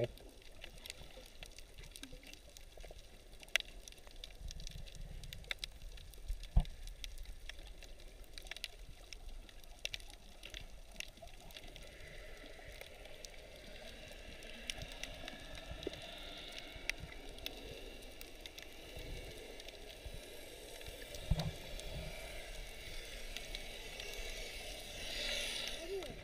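Faint underwater ambience picked up by a submerged camera: scattered soft clicks and crackles over a low water hiss, with a few louder knocks. A rushing swell of water noise builds just before the end.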